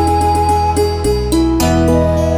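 Background music: held melody notes over a sustained bass.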